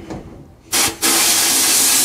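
Blast cabinet gun firing compressed air and glass bead media. A short burst about two-thirds of a second in is followed by a steady loud hiss from about a second in.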